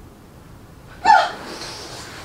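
A woman's sudden, short, sharp cry of pain about a second in, trailing off into breathy noise, as the massage therapist presses on her.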